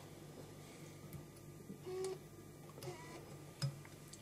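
Faint small clicks and the snip of fine fly-tying scissors cutting the thread off a finished fly at the vise, over a low steady room hum.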